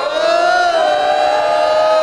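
A few voices holding one long, loud, slightly wavering shout or sung note together.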